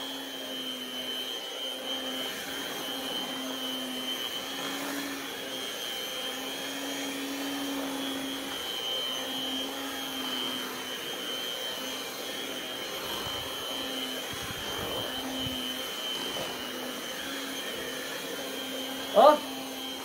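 Handheld electric mixer running steadily, its beaters churning a stiff homemade soap paste in a plastic basin. Its steady hum wavers slightly as it labours under the thickening mixture, which is near the limit the mixer can take before its motor overheats.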